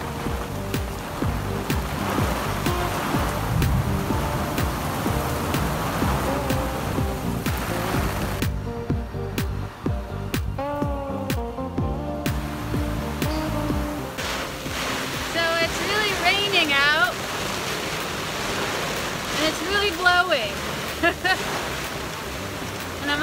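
Heavy tropical rain hissing steadily on the sea and the boat, under background music. The rain noise thins out briefly around the middle, and a voice with rising and falling pitch comes in during the second half.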